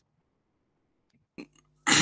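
Dead silence for over a second. Then a brief click and a steady low hum come in as a participant's call microphone opens, and a man's voice starts just before the end.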